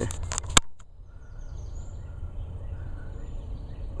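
Hand-handling noise from a knife being moved about: a few quick rustles and clicks in the first half second, ending in one sharp click. After that there is a low steady background with a few faint, short whistle-like tones.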